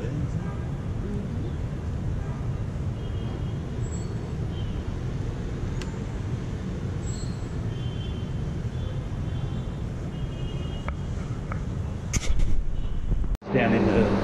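Outdoor city ambience: a steady low rumble of distant traffic with wind on the microphone, and a few faint short high tones. About thirteen seconds in it cuts off sharply and gives way to an indoor space with a steady low hum.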